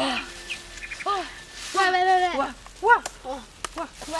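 Boys' voices in short rising-and-falling calls, one held for about half a second near the middle, with a few sharp clicks near the end.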